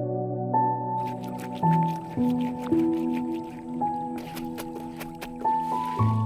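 Slow background music of held notes, with water splashing and dripping from about a second in as wet cloth is wrung out and sloshed in a metal bucket.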